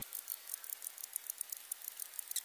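A strip of paper scratch-off lottery tickets rustling and crackling as it is handled and pulled apart, a rapid run of small dry crackles.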